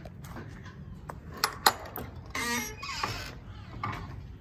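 Metal latch on a wood-and-wire enclosure gate clicking as it is worked, with two sharp clicks about a second and a half in, followed by a brief high squeak.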